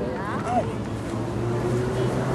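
People talking, with an engine humming steadily from about a second in.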